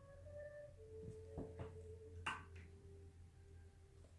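Near silence: quiet room tone with a steady low hum and a few faint ticks.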